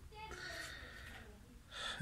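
A man's breathing in a pause between spoken phrases: faint breath noise, then a louder in-breath near the end.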